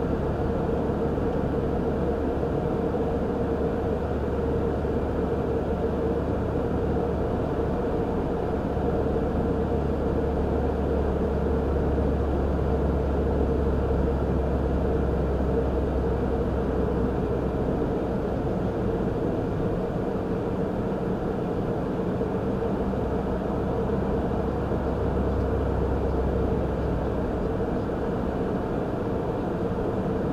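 Steady road and engine noise heard inside a moving car, with a low rumble that eases for a few seconds past the middle and a constant hum in it.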